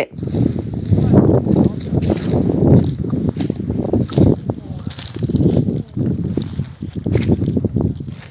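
Phone-microphone field sound: a loud, irregular low rumbling noise with indistinct voices beneath it.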